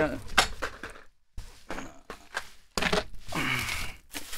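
Packing wrap rustling and cardboard scraping as the wrapped five-star base of an office chair is lifted out of its shipping box, with a few knocks in the first second. The rustling is loudest near the end.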